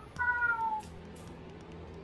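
A domestic cat meows once, a short call about half a second long that falls slightly in pitch.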